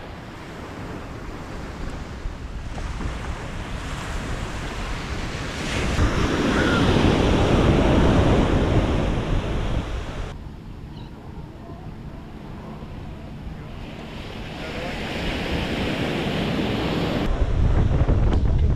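Ocean surf breaking and washing up a sandy beach, the wash swelling loud about six seconds in, easing off after ten seconds and building again near the end.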